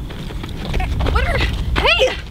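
A voice calling out twice, each call rising and then falling in pitch, about a second in and again near the end, over a steady low rumble of wind on the microphone.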